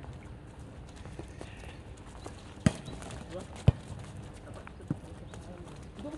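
Volleyball being struck during a rally: two loud sharp slaps of hands on the ball about a second apart, then a fainter one, with players calling out.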